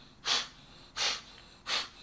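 Three quick, forceful exhalations through the nose, evenly spaced about 0.7 s apart, one with each turn of the head left, right and front. This is the breathing-out that expels water left in the nose after a nasal rinse.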